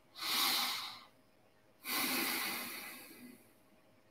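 A man breathing audibly close to the microphone: one short breath lasting under a second, then a longer one of about a second and a half that tails off.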